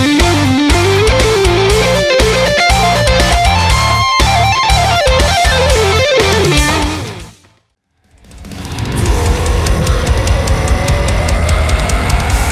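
Progressive metal: a lead electric guitar plays a winding melody over low, chugging rhythm guitars and drums, then fades out about two-thirds of the way in. After a brief silence the next heavy guitar track fades in.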